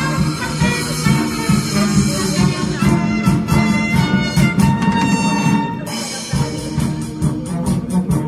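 Wind band playing live, brass and woodwinds over a steady drum beat.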